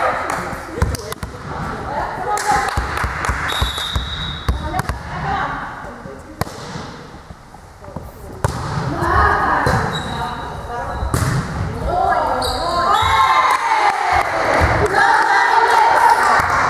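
Sharp volleyball impacts on the hard sports-hall floor and off players' hands, among women players' shouts and calls. The voices grow louder over the last several seconds.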